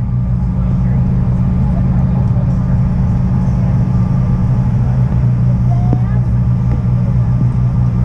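Jet airliner's engines heard from inside the cabin while taxiing: a steady low drone with a deep, even hum.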